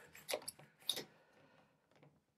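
A few faint, short clicks and rustles of hands handling a carbon-fibre tripod's rubber twist-lock legs, all in the first second.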